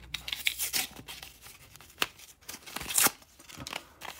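Plastic blister packaging of a carded keychain being worked open by hand: irregular crinkles, snips and clicks of the plastic and card. A sharp click comes about two seconds in and a louder rustle about three seconds in.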